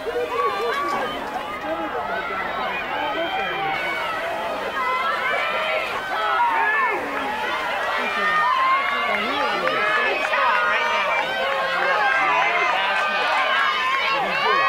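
Track-meet spectators shouting and cheering, many voices at once, growing louder in the second half.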